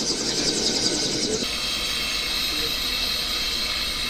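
Steady hiss over a low rumble from a vehicle coming to a stop. About a second and a half in, the rumble drops away and the hiss carries on.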